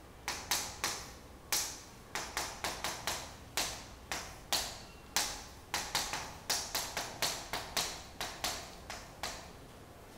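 Chalk writing on a chalkboard: an irregular run of sharp taps and short scratchy strokes, about three a second, with brief pauses between groups.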